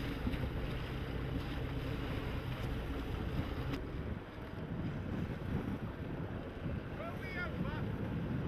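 Wind buffeting the microphone over water rushing and splashing along the hull of a keelboat sailing hard through choppy sea. The rushing dips briefly about halfway through.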